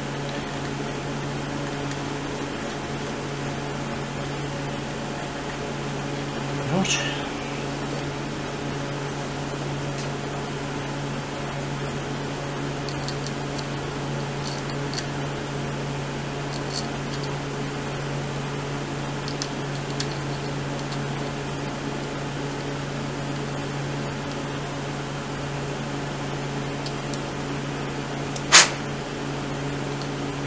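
A steady low mechanical hum throughout, with a few faint light ticks of small metal parts being handled and one sharp metallic clink near the end, as an alternator stator is fitted with its washers and nuts.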